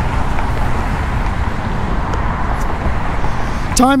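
Steady outdoor roar with a strong low rumble and no distinct events.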